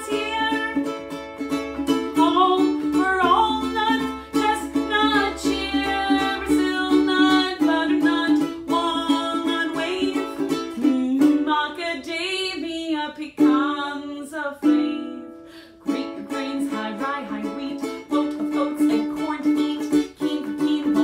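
Ukulele strummed in a steady rhythm, with a woman singing along. The strumming breaks off briefly about three-quarters of the way through, then resumes.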